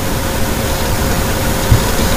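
Steady background noise: an even hiss with a low rumble and a faint steady hum.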